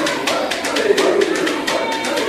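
Several wavering voices over a quick, even rhythm of sharp taps, about six a second.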